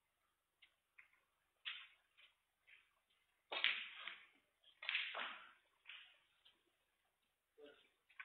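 Snooker balls colliding on the table: a few soft clicks, then two louder sharp clacks with short ringing tails about three and a half and five seconds in, as the cue ball strikes the pack of reds and balls knock apart, followed by fainter knocks.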